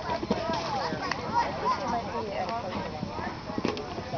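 Indistinct background chatter of several overlapping voices, with a few scattered thuds.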